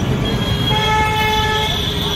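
A vehicle horn sounds once, a steady tone held for about a second, over the continuous rumble of road traffic.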